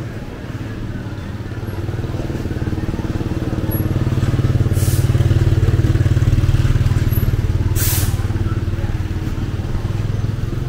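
A motor vehicle's engine running close by in a narrow street: a low, steady drone that grows louder, peaks in the middle and eases toward the end. Two short hissing bursts come about five and eight seconds in.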